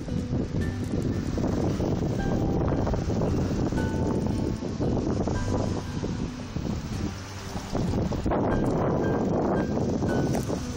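Wind buffeting the microphone, a rough low rumble throughout, with faint music notes playing underneath.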